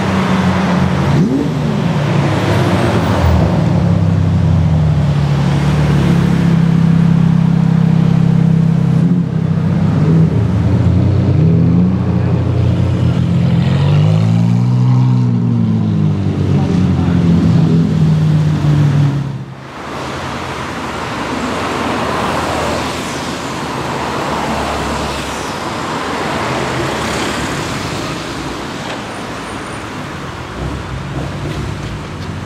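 Several supercar engines running at low revs in slow-moving traffic. About halfway there is one throttle blip, the revs rising and falling. After a sudden cut, quieter engine and tyre sound from cars rolling past.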